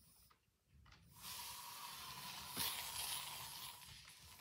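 Scented aerosol spray can sprayed in one long continuous hiss, starting about a second in.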